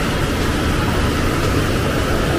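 Heavy rain falling: a steady, even rush with a low rumble underneath.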